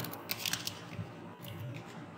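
Computer keyboard keys clicking as words are typed: a handful of faint, unevenly spaced keystrokes.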